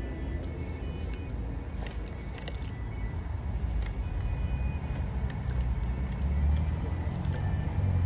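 Steady low rumble, like a motor vehicle running, that swells near the end, with a few faint clicks over it.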